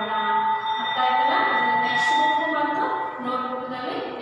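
A woman's voice speaking Kannada in a drawn-out, sing-song reading tone, over a faint steady high-pitched tone.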